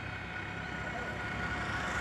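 Steady outdoor background noise between remarks: an even, low rumble and hiss with no distinct events.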